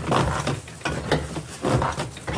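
Thatch mat-making machine running as reed is fed through and stitched into a mat, its mechanism clicking at a regular rhythm of about two clicks a second.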